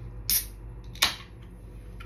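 Aluminium drink can of carbonated gin and tonic being opened by its pull tab: a brief hiss a little way in, then a single sharp snap about a second in.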